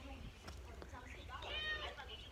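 A cat meowing once, faintly, about one and a half seconds in.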